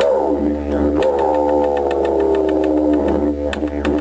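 Didgeridoo soundtrack: a steady low drone whose overtones sweep downward at the start and again about a second in. Near the end, a run of quick sharp taps joins it.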